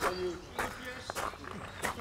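Footsteps on gravel, a short crunch about every half second, with faint voices in the distance.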